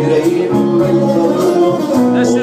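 Live music: a male singer's song over instrumental accompaniment, with sustained held notes between sung lines.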